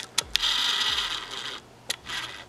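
A few handling clicks and a mechanical whir lasting about a second, from a DSLR camera being moved and its lens motor refocusing.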